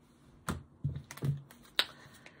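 Several short, sharp clicks and taps at irregular intervals, the sharpest near the end.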